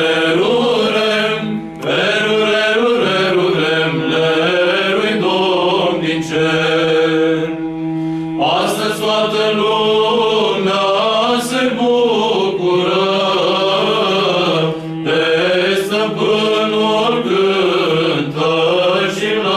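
Male a cappella choir singing a Romanian Christmas carol (colind), the melody moving over a steady held low drone note, with brief pauses for breath about two seconds in and again around eight seconds.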